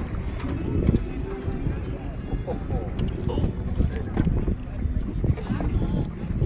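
Wind buffeting the microphone on a boat over open water, an uneven low rumble with scattered knocks, with indistinct voices mixed in.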